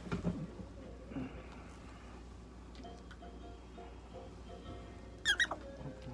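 Prairie dog giving a quick cluster of three or four high, fluttering squeaks near the end, a distress cry while its mouth is held open for treatment. Before that there are only faint small handling sounds over a low steady room hum.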